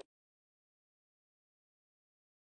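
Near silence: the call audio drops out completely, cutting the voice off mid-sentence, the sign of a lost video-call connection.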